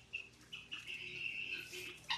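Small pet birds chirping faintly: a few short chirps, then a steady high twittering trill lasting about a second and a half.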